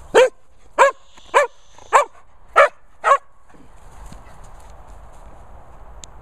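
A dog barking six times in a steady series, about one bark every half second or so, then stopping a little over three seconds in.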